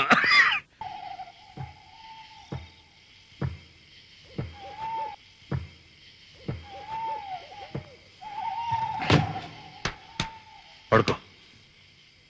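Night ambience on a film soundtrack: a steady high chirring drone, a thin wavering hoot-like tone that rises and falls several times, and scattered sharp knocks at irregular intervals, the loudest two near the end.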